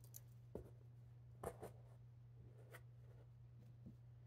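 Faint rustles and soft taps of felt figures being handled and pressed onto a flannel board, a few scattered touches with the loudest about a second and a half in, over a low steady hum.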